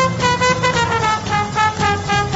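Live swing band playing: a trombone holds a long note that slides gently down in pitch, over drums keeping a steady beat of about four strokes a second.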